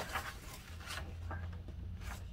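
A large folded paper sheet being unfolded and smoothed flat: soft paper rustling, with a few brief swishes in the first second.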